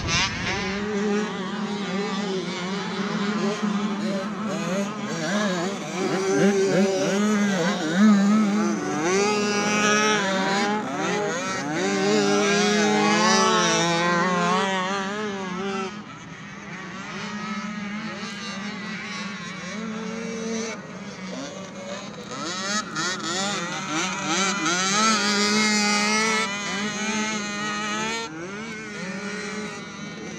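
A mini youth ATV's small engine revving hard and falling off again and again as the quad accelerates, jumps and corners on a dirt track, its pitch climbing and dropping in waves over a steadier engine drone. The level falls at a cut about halfway through, then the revving builds again.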